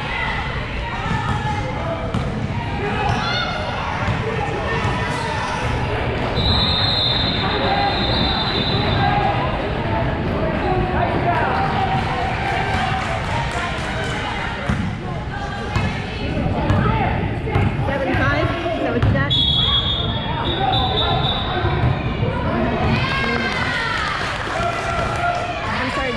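Indoor basketball game: a basketball bouncing on the hardwood court amid echoing voices in a large gym. Two held high-pitched tones sound, about a quarter of the way through and again about three-quarters through.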